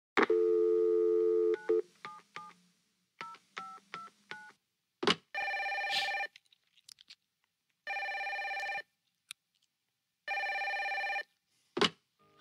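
A landline telephone call is placed. A steady dial tone plays, then a touch-tone number is dialled as two quick groups of beeps. After a click the line rings three times, each ring about a second long and about two and a half seconds apart, and a click comes just before the end.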